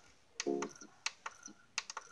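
A series of light, sharp clicks and taps, about seven in two seconds and unevenly spaced, with a brief low pitched note about half a second in.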